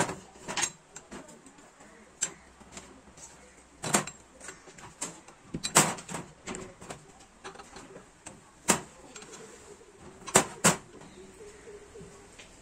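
Scattered metal clanks and taps, about eight sharp knocks at irregular intervals with two close together near the end, as a spanner and steel parts knock against the steel frame of a sheet-metal bending machine being assembled.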